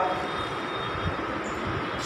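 Steady background noise of the room with no clear pitch, a continuous even hiss like a fan or air movement, in a gap between spoken instructions.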